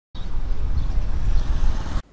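Steady outdoor background noise: a heavy low rumble with a fainter hiss above it, starting abruptly and cutting off sharply at the end.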